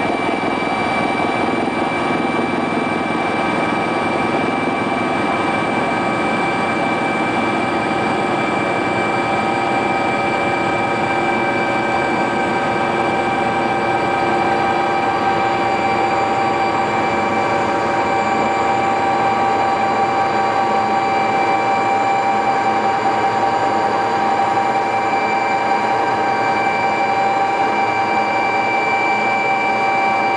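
Helicopter cabin noise in flight, heard from inside: a loud, steady drone with several steady whining tones from the machinery.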